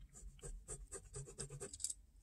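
Pen drawing short diagonal lines on lined notebook paper: a quick run of faint, short scratches, one per stroke.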